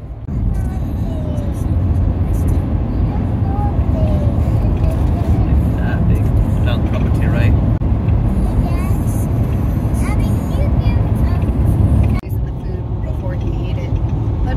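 Steady low rumble of road and engine noise inside a moving car's cabin, with faint voices over it. The level drops suddenly about twelve seconds in.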